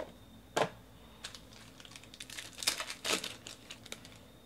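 Foil trading-card pack wrapper crinkling and tearing open in the hands, with cards being handled: a sharp crackle about half a second in, then a quick run of crinkles and crackles in the second half.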